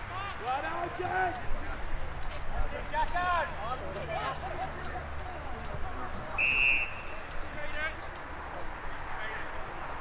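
Players shouting calls across the ground, then a single short blast of a field umpire's whistle about six and a half seconds in, with low wind rumble underneath.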